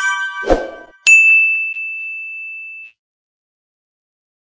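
Sound effects of an on-screen subscribe-reminder animation: a bright multi-tone chime at the start and a brief lower blip, then a single high ding about a second in that rings on for nearly two seconds before stopping.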